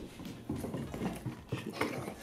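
A dog moving across a wooden floor: a run of short, irregular clicks and scuffs from its paws and claws.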